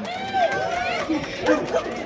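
Crowd of people talking and calling out over one another in a street, several voices overlapping at once, with a few short clicks.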